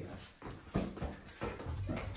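A few light taps and knocks as a balloon is batted with a wooden tray and drops onto a tiled floor, with shuffling footsteps.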